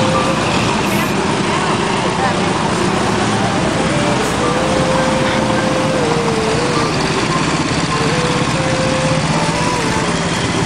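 Engines of motorcycles with sidecars running steadily as they ride slowly past at close range, with people's voices over them.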